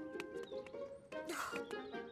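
Soft background music with long held notes, over a few light taps and clicks and a brief rustling sound effect about halfway through.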